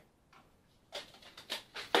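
A quick run of light clicks and taps from food containers being handled on a kitchen countertop, starting about halfway in.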